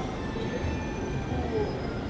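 Steady city street ambience: a continuous rumble of traffic with faint, thin high-pitched squealing tones over it.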